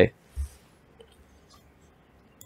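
A man's voice finishing a word, then a single soft low thump and a faint click over near-silent room tone.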